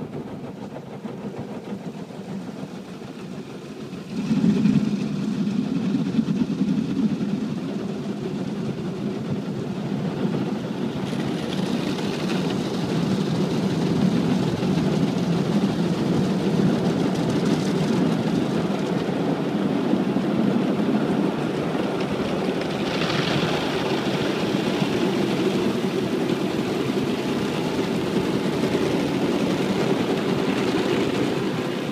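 An automatic car-wash machine heard from inside the car: a steady mechanical rumble with water spraying onto the car body. It gets suddenly louder about four seconds in, with brief surges of hissing spray later on.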